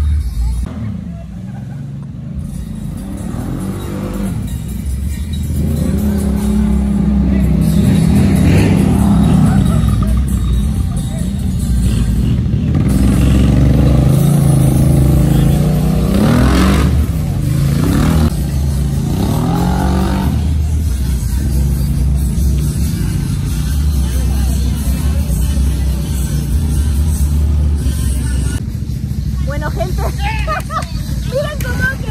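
Dirt-bike engine revving up and falling back again and again, heard close to the bike, with three quick revs a little past halfway.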